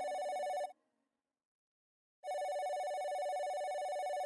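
Telephone bell ringing in repeated rings: one ring cuts off under a second in, and after a pause of about a second and a half the next ring lasts about two seconds.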